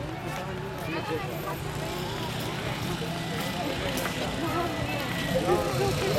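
Crowd chatter: many people talking at once, with no single clear voice, over a steady low hum.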